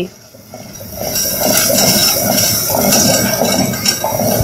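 Wooden spoon stirring a bubbling curry in a clay pot on the stove: a steady wet scraping and sizzling that starts about a second in.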